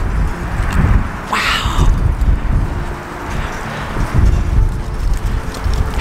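Wind buffeting the camera's microphone in gusts: a loud, uneven low rumble, with a brief hiss about a second and a half in.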